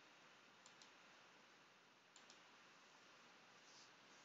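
Near silence with faint computer mouse clicks: two quick double clicks about a second and a half apart.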